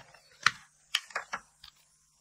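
Short, sharp clicks and taps of makeup items being handled on a table, about six in two seconds, the loudest about half a second in: plastic cases and pencils knocking together as she looks for an eyeliner pencil.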